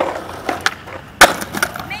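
Skateboard rolling on concrete, with one loud, sharp clack of the board hitting the ground a little over a second in and a few lighter clicks around it.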